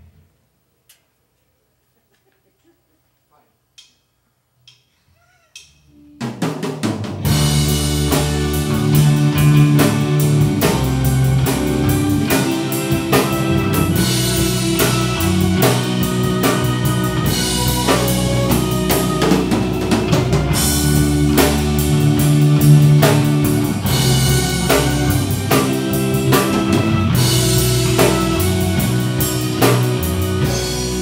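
Live progressive rock band: after about six seconds of near silence broken by a few faint clicks, drum kit, guitars and keyboards come in together loudly and play on at full volume, with no singing.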